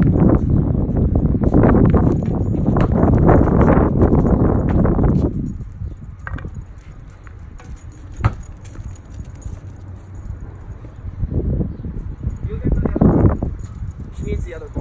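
A loud, rough noise fills the first five seconds, then it goes quieter and a single sharp knock of a tennis racket striking a tennis ball comes about eight seconds in; the rough noise returns near the end.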